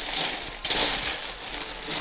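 Thin printed packing paper crinkling and rustling as a hand presses and pushes it around inside a cardboard box, louder from about half a second in.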